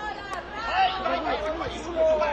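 Many voices at once, chattering and calling out over one another, several of them high-pitched, with no single clear word.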